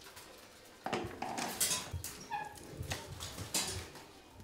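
Thin strips of split cane (rattan) clicking, scraping and rustling against each other as they are handled. There is a string of sharp clatters starting about a second in.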